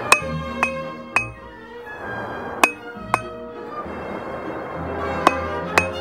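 Hand hammer striking red-hot round steel stock on an anvil, each blow giving a bright metallic ring: three blows about half a second apart, a pause, two more, then two more near the end. Background music plays under the strikes.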